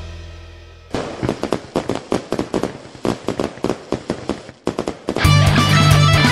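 A held electric guitar chord fades out, then a string of firecrackers pops and crackles irregularly for about four seconds. Just after five seconds in, the band comes back in loudly with electric guitar, bass and drums.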